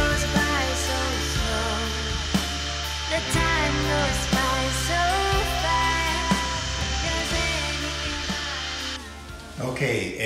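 Background music with a melody over the steady noise of an electric drywall sander running against a ceiling; the sander noise stops near the end.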